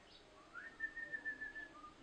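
A faint high whistled tone: it slides up, holds steady with a slight waver for about a second, then ends with a short lower note.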